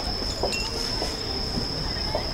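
Outdoor night ambience: a steady high-pitched whine held over a low rumble, with a few faint, distant voices.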